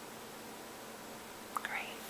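Steady background hiss. About one and a half seconds in come a few sharp clicks and a brief soft whisper close to the microphone.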